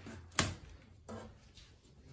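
Plastic pry tool knocking against the edge of a fuel sending unit's mounting plate as it is pried up off a metal fuel tank: one sharp click about half a second in, then a fainter knock a little after a second.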